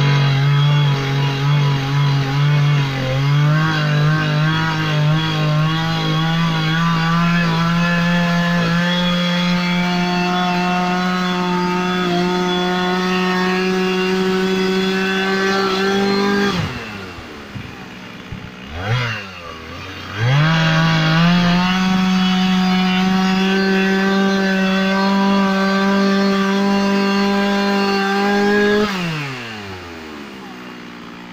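Two-stroke chainsaw running at full throttle cutting wood, its pitch climbing slowly through a long first run. About sixteen seconds in it drops to idle for about four seconds, then revs up again for a second long run and drops back near the end.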